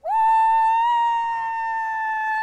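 Cheerleaders letting out a long, loud, high-pitched shout, held at one steady pitch after a quick upward swoop at the start.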